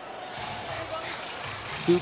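Steady murmur of an arena crowd during live basketball play, with no single sound standing out.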